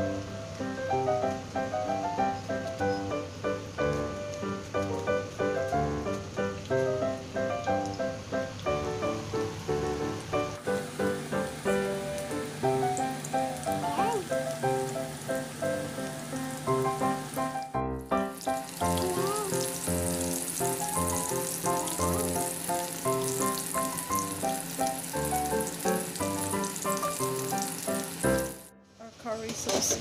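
Background music throughout, with the hissing sizzle of breadcrumb-coated chicken breast fillets frying in hot oil in a pan over the second half.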